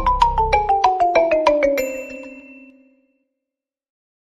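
Short musical logo jingle: a quick run of bright, descending notes that stops about two seconds in, the last note ringing out and fading.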